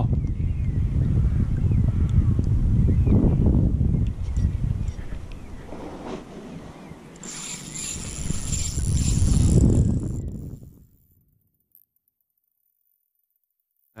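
Wind rumbling on the camera's microphone. It fades out a few seconds before the end into total silence, where the sound cuts out.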